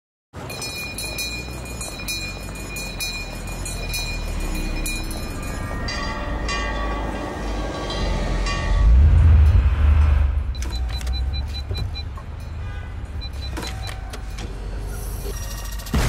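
A car in a parking garage: a deep engine rumble swells about nine seconds in and dies away. Clicks and short high beeps come before and after it.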